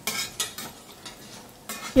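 Slotted stainless steel turner scraping and clacking against a stainless steel frying pan as it flips paneer cubes, two sharp strokes in the first half second, over a faint sizzle of the cubes frying in a little oil.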